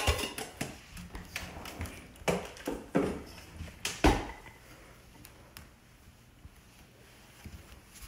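Kitchen clatter: a few sharp knocks of pots, lids and utensils on a stone counter and stovetop, the loudest right at the start and about four seconds in.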